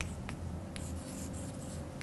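Chalk writing on a blackboard: faint scratching strokes with a couple of light taps of the chalk.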